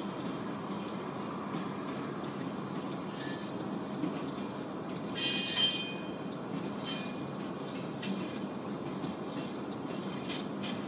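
Covered hopper cars of a freight train rolling past: a steady rumble with regular wheel clicks, about two a second. A brief high squeal comes about five seconds in.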